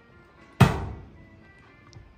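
A single loud thump on corrugated metal roof sheeting about half a second in, dying away over about half a second, over quiet background music.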